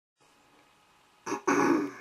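A man clearing his throat in two quick bursts, a short one then a longer one, a throat roughened by a cold he is getting over.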